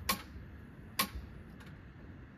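Two sharp clicks about a second apart, the first the louder, followed by a fainter click, over a low background hiss.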